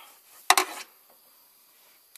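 A single sharp metallic clank about half a second in, with a brief ring after it: a steel ring spanner knocking against the engine as it comes off a timing-belt pulley nut.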